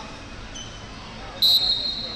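Referee's whistle, one short shrill blast about a second and a half in, restarting the wrestling. Gym crowd murmur runs underneath.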